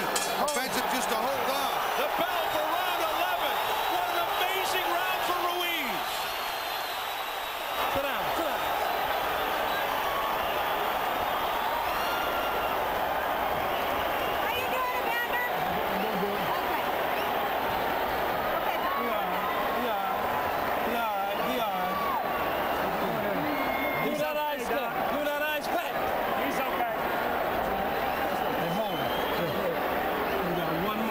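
Boxing arena crowd noise: many voices shouting at once, blended into a steady din, dipping briefly about six seconds in before rising again.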